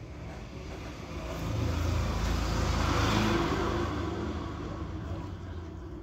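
A motor vehicle passing by: a low engine rumble and road hiss that swell about a second and a half in, peak, and slowly fade away.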